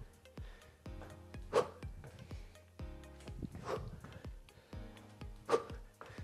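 Background workout music, with four short, sharp exhales about two seconds apart from a man breathing hard through explosive side-to-side skater jumps.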